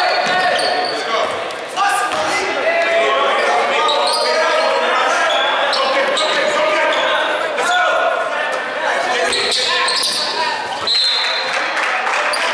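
A basketball bouncing on a gym's hardwood floor during play, with players and spectators calling out indistinctly, all echoing in a large hall.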